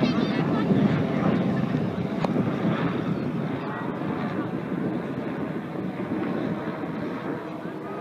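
Bell 206 JetRanger helicopter flying past at a distance, its rotor noise slowly fading as it moves away, with wind on the microphone.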